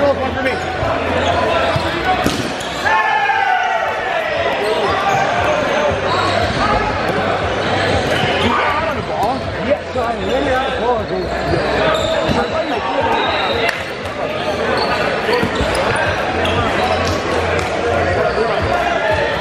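Dodgeball game in a reverberant gym: balls bouncing and smacking on the wooden floor among players' overlapping shouts and calls.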